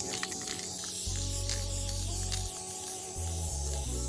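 Aerosol spray paint can hissing as paint is sprayed onto a wall, under a background music beat with deep bass notes that drop out twice.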